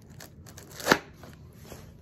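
A curved polymer 7.62×39 AK magazine being pushed down into a Kydex magazine insert: light plastic-on-plastic handling ticks, then one sharp click a little under a second in as it goes into place.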